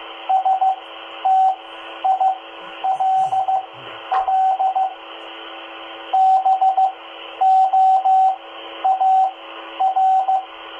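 Morse code (CW) practice sent over an FM 2-meter amateur repeater and heard through a handheld transceiver's speaker. A single steady tone is keyed in dots and dashes, in short letter groups with pauses between them, over constant receiver hiss.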